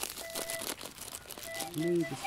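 Thin plastic bag crinkling and crackling as it is handled and opened in the hands, with many small crackles. A faint background melody of held notes plays underneath.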